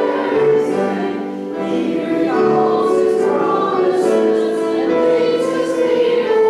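A congregation singing a hymn together in held, sustained notes.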